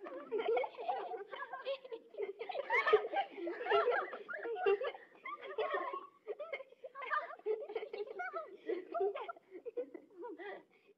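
Young children's high-pitched voices giggling and chattering without clear words, with no pause.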